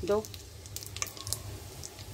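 Whole spices (cinnamon, cloves, black pepper, cardamom, bay leaves) sizzling in hot oil in a stainless steel pot, with scattered small pops and crackles.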